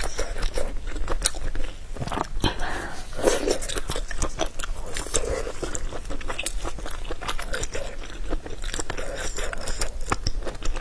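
A person chewing food close to a microphone, with irregular wet mouth clicks throughout.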